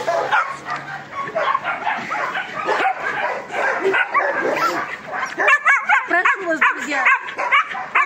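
Several puppies yipping and whimpering with many short, high-pitched calls, busiest in the second half.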